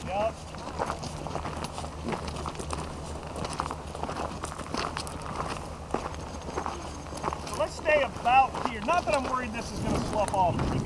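Footsteps of several people walking on loose gravel and stones, irregular crunching steps throughout. Voices of people talking come in near the end.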